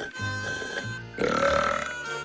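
A cartoon character's burp, about two-thirds of a second long, starting a little past the middle, after a sip of soda. Background music with bass notes plays throughout.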